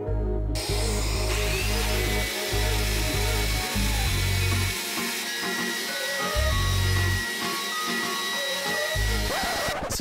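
Background music over a hand-held electric sander running on a wooden slab; the sander starts about half a second in and cuts off shortly before the end, a steady hiss with a high whine.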